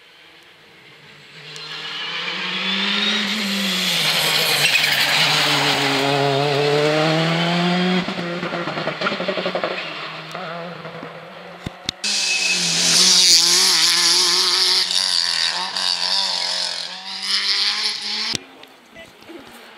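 Rally car engine at stage speed, building as the car comes closer, with the revs rising and falling through gear changes and corners. A second loud pass follows about twelve seconds in, the engine again revving up and down.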